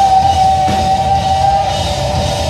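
Live rock band playing: electric guitars, bass guitar and drum kit, with one long high note held over them for most of the time.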